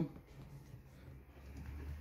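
Faint handling sounds of a metal twist-off lid being screwed down onto a glass jar, with a low hum growing in the second half.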